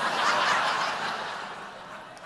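Studio audience laughing at a joke, a crowd of many voices that swells at once and then slowly fades.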